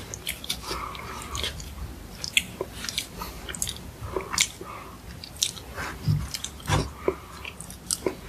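Close-miked chewing of a soft red bean bun, full of irregular sharp, wet mouth clicks. Two dull low knocks come about six and seven seconds in.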